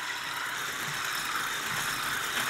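Electric stick blender with a wire whisk attachment running steadily, beating egg whites into meringue in a glass bowl.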